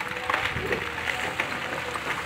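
Caterpillar hydraulic excavator working: its engine running steadily, with a few faint clatters of rubble and dirt spilling from the bucket.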